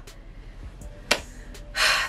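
A woman's breathy, unvoiced gasp of delight near the end, with a single faint click about a second in.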